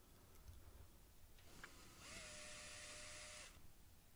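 A small power drill briefly running a thin bit into wood through a metal keyhole hanger plate, starting about halfway in and stopping after about a second and a half. It is a faint, steady whine with hiss that rises slightly as it spins up.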